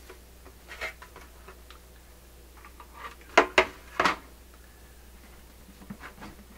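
Handling noise from the record player's cabinet parts: a light click near the start, then three sharp knocks in quick succession around the middle, with small scattered ticks.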